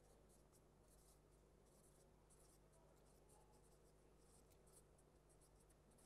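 Faint strokes of a marker pen writing on a whiteboard, many short strokes one after another, over near silence with a steady low hum.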